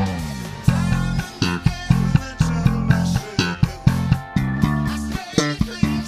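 Fender Jazz Bass with Custom Shop '60s pickups, played through a TC Electronic BH500 head, playing a moving bass line of plucked notes over a backing track of the song with drums hitting about twice a second.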